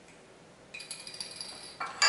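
Small clicks and light metallic clinks of a metal measuring spoon against a glass sauce bottle, starting about three-quarters of a second in, with a faint high ring.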